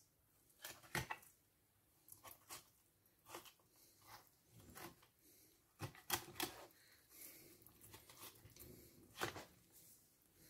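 Faint, irregular clicks and crackles of a filleting knife running along a flatfish's bones as a fillet is cut free.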